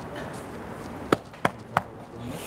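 Three short, sharp knocks about a third of a second apart, over low room noise.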